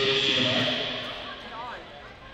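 A man's voice calling out, loud and echoing in a large hall; it starts suddenly and fades over about a second and a half.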